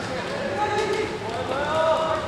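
Kendo fighters' kiai: long, drawn-out wordless shouts from more than one voice, overlapping and loudest near the end. A single sharp knock comes at the very start.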